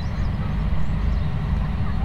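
Steady low outdoor background rumble, even throughout with no distinct events.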